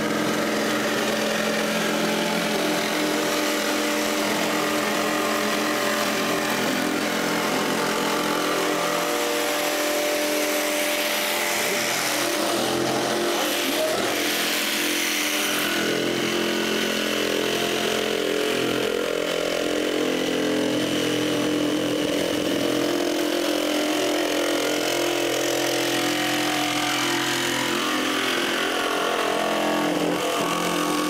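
Festool Carvex jigsaw sawing through a ski blank along its steel edge, cutting the ski's outline free of the surrounding laminate: a steady motor whine with the noise of the blade cutting.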